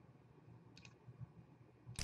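Near silence with faint computer mouse clicks: two light clicks a little under a second in and a sharper click at the end.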